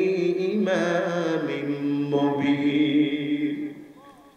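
A man chanting a Quranic verse in the drawn-out melodic style of recitation, holding long notes that step up and down in pitch, and trailing off just before the end.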